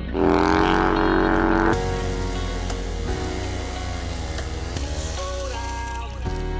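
Hip-hop backing track without vocals, opening with a loud motorcycle engine revving that rises in pitch, holds, and cuts off abruptly after about a second and a half; the beat then carries on alone.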